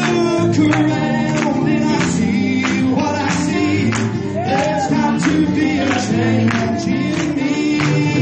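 Gospel song: voices singing over instrumental backing with a steady beat.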